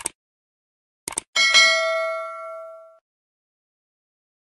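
Subscribe-button animation sound effect: a short click, then a quick double click about a second in, followed by a bell chime of several ringing tones that fades out over about a second and a half.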